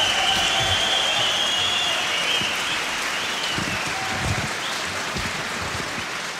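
Prison inmate audience applauding, the clapping easing slightly toward the end.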